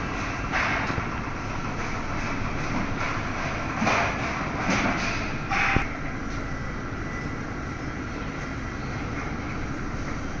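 Hydraulic scissor lift lowering its work platform: a steady running noise, with a few brief louder bursts and a sharp click in the first six seconds as the scissor stack folds down.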